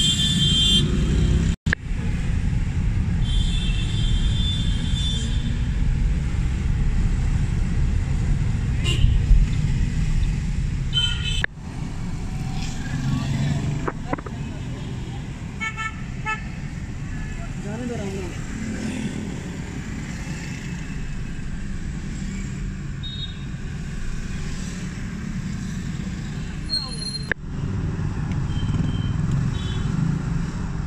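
Busy street traffic: auto-rickshaw, car and motorbike engines running in a steady rumble, with vehicle horns honking several times, the longest near the start and from about three to five seconds in, and voices of people on the street.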